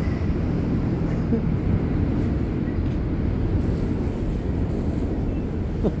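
Steady low rumble of nearby street traffic.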